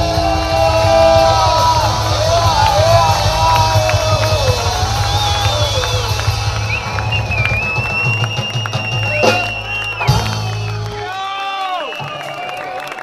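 Live rock band playing the last bars of a song, with a steady bass line, singing and a long high note held near the end. The music stops about eleven seconds in and the crowd whoops and cheers.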